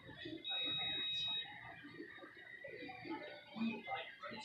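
A single high, steady electronic beep lasting about a second, starting about half a second in, over background voices.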